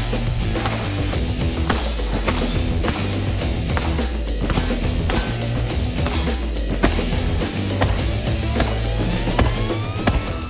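Background music with a heavy, sustained bass line, and over it sharp cracks of pistol shots from a 9mm Shadow Systems CR920 subcompact, fired at uneven intervals.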